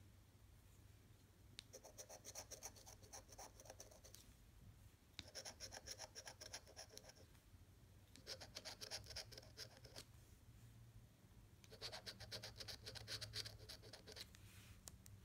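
Edge of a metal military challenge coin scraping the latex coating off a scratch-off lottery ticket: four quiet bursts of quick back-and-forth strokes, each about two seconds long, with short pauses between them.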